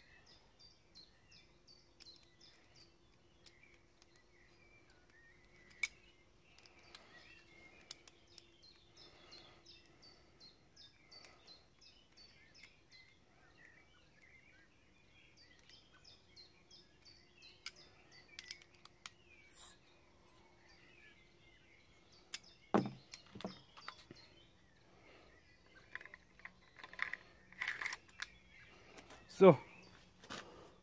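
Faint clicks and knocks of the magazine of a Luger P08 CO2 blowback airsoft pistol being handled as its CO2 capsule is screwed tight with an Allen key, with one louder knock a little after twenty seconds. Songbirds chirp in the background over a faint steady hum.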